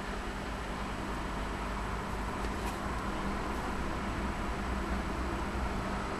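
Steady background hiss with a low, constant hum, and a single faint tick about two and a half seconds in.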